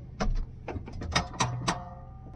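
Combine harvester with a corn head running, heard from inside the cab: a steady low drone with quick, irregular clicks and knocks, about four or five a second.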